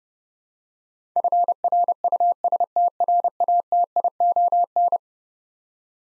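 Morse code at 30 words per minute, a single steady beep tone keyed in short and long elements, spelling the word FRUSTRATION. It starts about a second in and stops about a second before the end.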